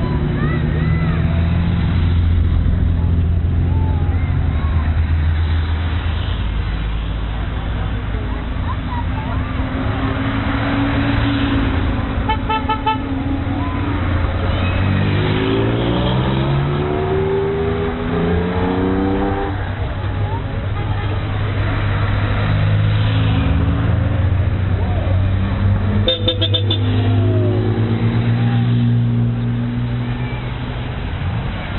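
Classic sports car engines running as the cars roll past slowly. One engine revs up with a rising pitch near the middle. A car horn toots briefly twice, once near the middle and once near the end, over the voices of onlookers.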